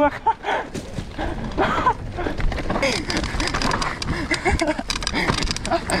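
Mountain bike rolling down a dirt forest trail: steady tyre and wind rumble on the camera with frequent clicks and rattles from the bike over the ground, and a few short wordless vocal sounds from the riders.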